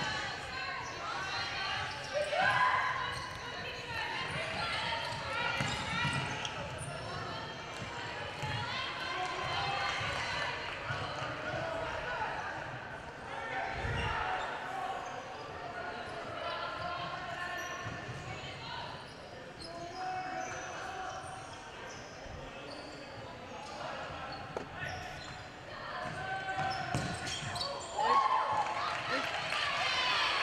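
A futsal ball being kicked and bouncing on a wooden indoor court, repeated knocks echoing in a large hall, with players' voices calling out on court.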